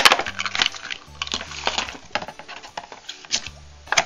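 Clear plastic blister packaging crackling and clicking in irregular snaps as it is pulled open by hand, over background music.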